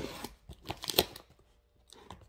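Cardboard shipping box being handled and opened: a few sharp clicks and short crinkling rustles, the loudest about a second in.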